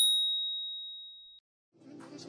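A single bell-like ding, one clear high tone fading out over about a second and a half: a workout interval timer's signal marking the change to the next exercise interval.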